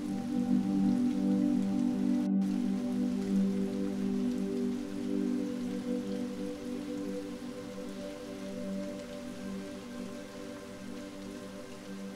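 Ambient meditation music: low pad chords held steady over a soft, even rain sound, slowly getting quieter.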